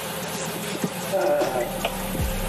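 Audi 100 C3's 2.3-litre five-cylinder engine idling steadily, heard from inside the cabin, with the automatic gearbox just put into drive. A short click comes near the end.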